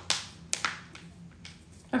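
A few sharp taps or clicks from hands handling something small: two close together at the start and two more about half a second in.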